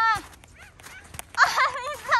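A young child's high-pitched voice: a long held call breaks off just after the start, then about a second and a half in come quick, wavering high-pitched yelps.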